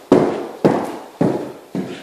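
Footsteps: four steps about half a second apart, each a sharp strike with a short echo in an empty, unfurnished room.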